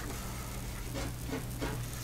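Quiet room tone through a webcam microphone: a steady low hum under an even hiss.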